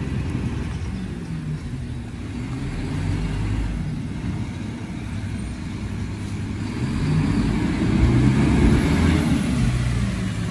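Low rumble of a motor vehicle's engine running, growing louder about seven seconds in.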